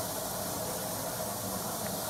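Steady hiss of hot water spraying out of a failed pipe under a sink, flooding the apartment.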